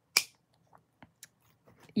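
Metal side cutters snipping through a piece of metal jewelry: one sharp snip just after the start, then a few faint small clicks.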